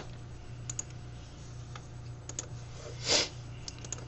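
Computer mouse clicks, several in quick pairs, over a faint steady low hum. A brief louder noise comes about three seconds in.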